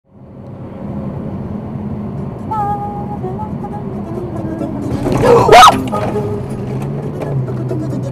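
Steady tyre and engine noise inside a car cabin at about 100 km/h. About five seconds in, a loud, sudden shout of alarm cuts in briefly.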